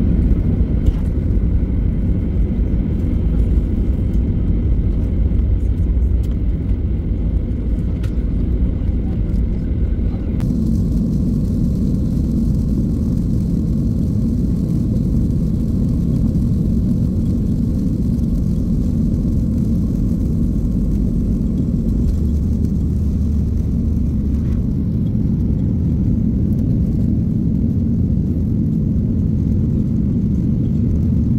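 Jet airliner cabin noise during takeoff and initial climb: a loud, steady low rumble from the engines and airflow that grows heavier about ten seconds in and then holds.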